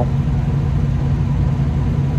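Steady low rumble of an idling engine: a deep, even hum that does not change.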